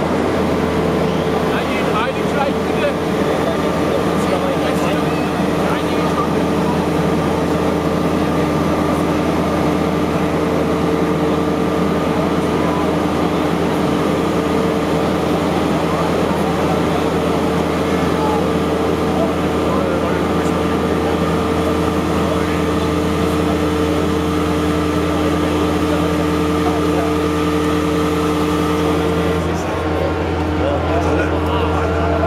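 Liebherr R9400 mining excavator running as its boom and bucket move: a steady low hum with steady higher whining tones over it, the whine cutting off shortly before the end.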